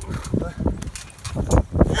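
Irregular thuds and scuffing of bodies on a trampoline bed as wrestlers grapple, with several sharp knocks in the second half.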